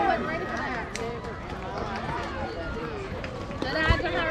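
Spectators at a youth baseball game talking and calling out in the background, with a short sharp click about a second in and a dull thump just before a nearer voice starts near the end.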